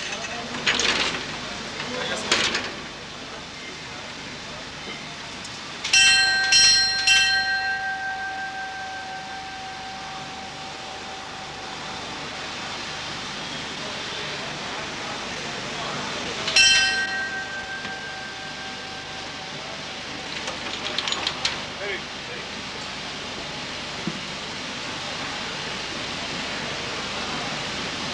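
Pit-shaft signal bell struck three times in quick succession about six seconds in, each ring dying away slowly, then struck once more about ten seconds later: signals between the cage and the winding engineman during man-riding. Short metallic clatters of the cage gates being worked come near the start and again past the middle, over a steady background noise.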